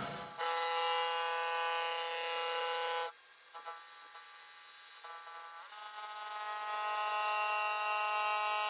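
Vertical milling machine with an end mill cutting metal: a steady whine of several pitches. It drops away sharply about three seconds in, comes back faintly in short patches, then builds back up to a steady whine over the last few seconds.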